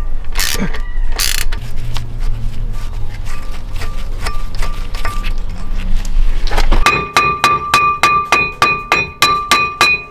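A rusted-on steel brake disc is struck with a club hammer to free it from the hub, with rapid blows about three a second starting near the end. Each blow makes the disc ring with a clear metallic ring. Before that there are scattered clicks over a low rumble.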